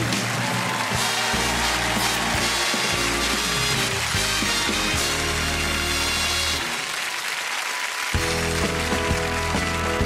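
Studio audience applauding over stage music; about eight seconds in a live rock band with electric guitar and bass starts a song's intro.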